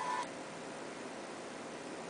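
Sound from the phone's small speaker cuts off about a quarter second in as the video playing on it is paused, leaving a steady faint hiss of room tone.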